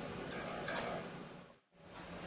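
Faint, even ticking about twice a second over a low hiss, breaking off into a moment of silence about one and a half seconds in.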